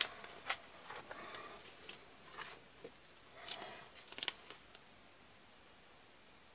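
Faint crinkling and light clicks of a strip of silver duct tape being handled and stretched, with a short louder rustle about three and a half seconds in. The sounds stop about four and a half seconds in.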